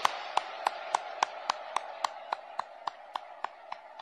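A man's hand claps close to the podium microphones, sharp and evenly paced at about three and a half a second, growing slowly softer. Behind them runs a steady wash of applause from the audience in the hall.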